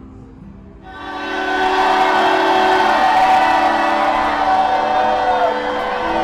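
Acoustic guitar strummed softly, then about a second in a loud, sustained mass of many held tones swells up and keeps going, some of its pitches sliding downward toward the end.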